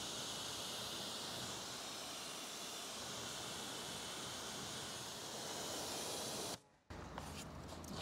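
Wheel foam fizzing on a car wheel: a steady, soft hiss, cut off briefly by a moment of silence late on.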